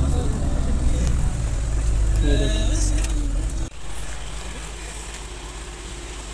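Rushing water of the fast-flowing Neelam River with wind rumbling on the microphone. The sound cuts off abruptly a little past halfway, leaving a quieter, even river rush.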